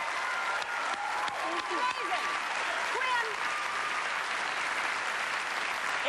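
Studio audience applauding right after a guitar performance ends, with shouted whoops and voices over the clapping.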